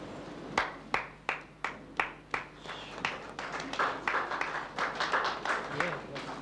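Audience applause: single sharp claps in an even beat, about three a second, start about half a second in, then thicken into general clapping from about three seconds in.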